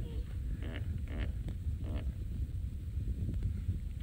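Hippopotamus calling: a series of short grunting honks about half a second apart in the first two seconds, then trailing off, over a low steady wind rumble.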